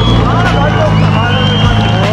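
A voice talking over crowd babble and a steady low hum from an idling vehicle engine.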